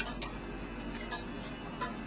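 A long spoon stirring sauce in a metal saucepan, with a couple of light clicks of the spoon against the pot near the start and faint ticks after, over a faint steady low hum.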